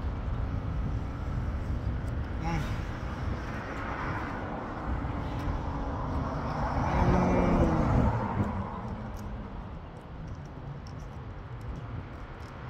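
Roadside traffic noise. A vehicle passes close about seven seconds in, the loudest moment, its engine note falling as it goes by.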